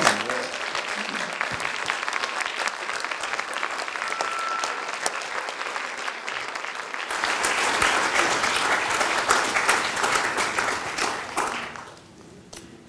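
Audience applauding, steady at first, then swelling louder about seven seconds in and dying away just before the end.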